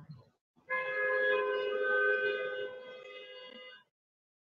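A held, steady pitched tone with a rich, horn-like sound, starting under a second in, lasting about three seconds, fading a little and then cutting off suddenly.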